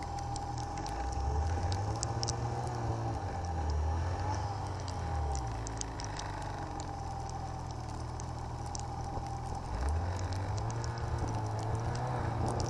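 Snowmobile engine running underway, its note rising with the throttle about a second in, around four seconds and again near ten seconds, over a steady whine and scattered light ticks.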